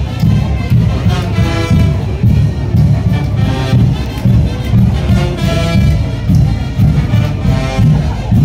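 Mexican brass band (banda de viento) playing chinelo brinco music: brass carrying the melody over a steady pulsing bass and drum beat.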